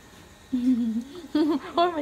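A person's voice: a short held hum about half a second in, then quick talking.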